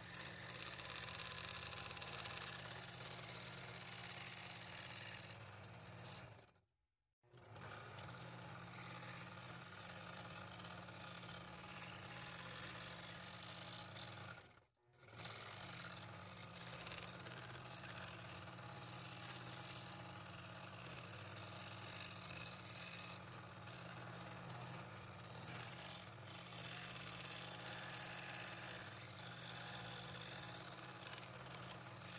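Scroll saw running steadily, its blade stroking up and down as it cuts the inside frets of a 3/8-inch walnut board. The sound drops out briefly twice, about 7 and 15 seconds in.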